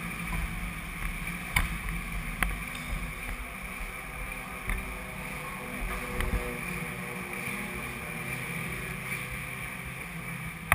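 Motorcycle engine idling steadily, with two sharp clicks in the first few seconds.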